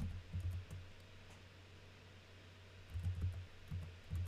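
Computer keyboard typing: a few soft key clicks with low thumps from the desk, in a short cluster just after the start and another near the end, quieter in between.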